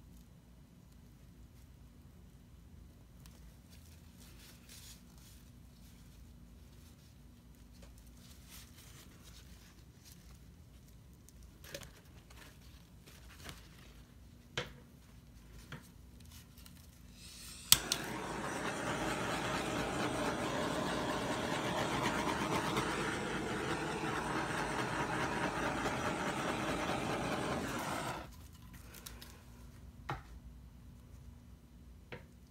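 A handheld gas torch clicks alight and hisses steadily for about ten seconds, then cuts off suddenly. A few light knocks come before it.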